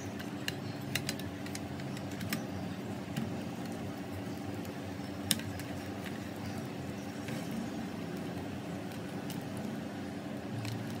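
Scattered light clicks and taps from handling the metal chassis of a car stereo head unit and its cable, the sharpest a little after the middle, over a steady low hum.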